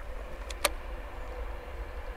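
Bow-mounted Haswing Cayman B GPS 55 lb-thrust electric trolling motor running steadily, pushing the boat upstream at a steady pace, a faint even whine over a low rumble. A single sharp click comes a little over half a second in.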